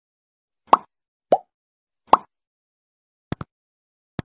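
Cartoon pop sound effects, three of them in the first couple of seconds, followed near the end by a quick double mouse-click sound effect.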